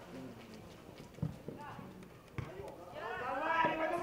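Football being kicked: two dull thuds about a second apart, followed by voices calling out across the pitch near the end.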